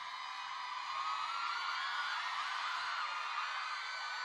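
Audience cheering and screaming, many high voices whooping and yelling together in a steady wash.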